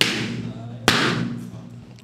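A rubber balloon bursting with a loud bang, followed by a second sharp bang just under a second later, each ringing off, over a low held musical tone.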